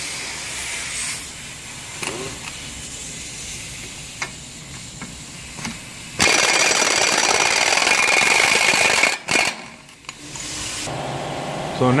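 Impact gun spinning the 30 mm twelve-point front axle nut off the wheel hub: a loud run of about three seconds starting about halfway through, followed by a brief second burst.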